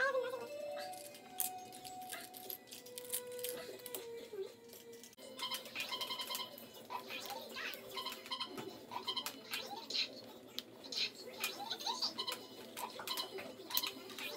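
Small plastic Lego bricks clicking and rattling as they are picked from a pile and pressed together on a hard tabletop, many short clicks throughout, with music playing in the background.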